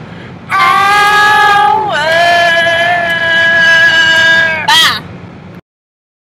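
Women singing the last lines of a homemade jingle in long held notes: one note slides down about two seconds in, the next is held, and a short rising note ends it just before five seconds. A steady car road hum runs beneath, and the sound cuts off to silence near the end.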